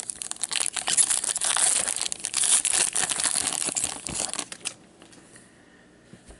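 Wrapper of an Upper Deck Trilogy hockey card pack crinkling and tearing as it is opened by hand. It is a dense run of crackles that stops after about four and a half seconds.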